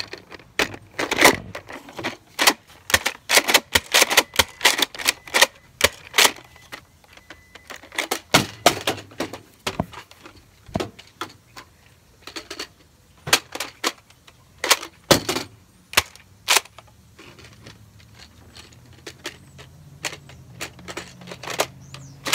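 Plastic clicks and clacks from a Nerf Alpha Trooper CS-12 blaster and its 25-dart magazine being handled during a magazine swap. The clicks come in quick runs for the first several seconds, then more sparsely.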